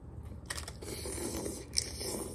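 A bite into a crisp fried corn tostada topped with shrimp aguachile, then crackling chewing close to the microphone, with one sharp crunch near the end.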